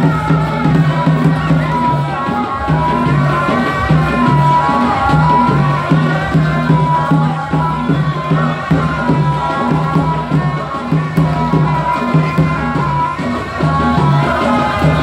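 Ardah, the Gulf men's traditional dance music: drums beating a steady repeating rhythm under a men's group chant.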